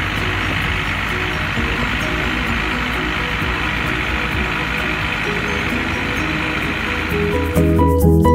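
Motorboat under way at speed: a steady rush of engine noise, wind and churning water, with music coming back in near the end.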